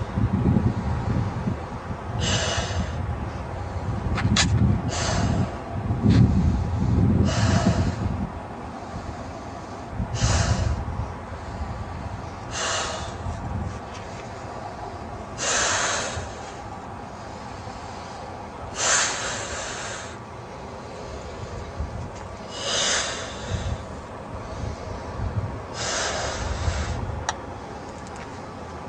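A person blowing up a balloon by mouth: a sharp breath in every two to four seconds, each followed by a blow into the balloon. The blows are heavy for the first eight seconds and lighter after that, as the balloon is already firm.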